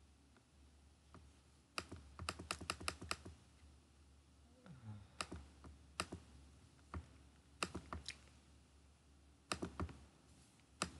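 Faint clicking of a computer mouse and keyboard: a quick run of about seven clicks about two seconds in, then single clicks every second or so.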